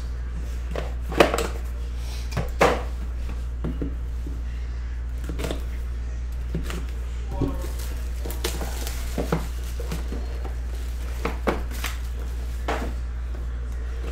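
Cardboard trading-card boxes being handled on a table: scattered light knocks, taps and rustles as they are moved and set down, over a steady low hum.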